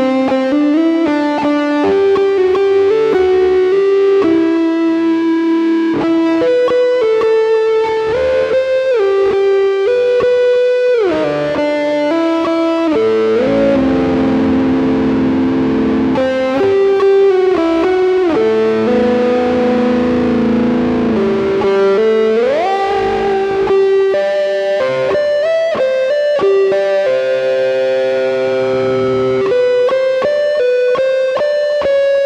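Les Paul Custom electric guitar played through a Rodenberg TB Drive overdrive and a delay: an improvised melodic solo of sustained notes, the delay repeats overlapping them. There is a falling slide about eleven seconds in and a rising slide about twenty-two seconds in.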